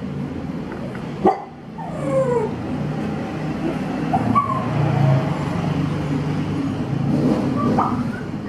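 Several falling, whine-like animal calls over a steady low hum, with a sharp click a little over a second in.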